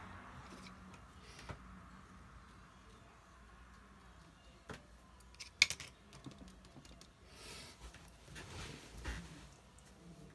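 Light clicks and taps, the loudest about halfway through with a quick cluster after it, and soft rustling: a hand handling a spiral-bound watercolour pad.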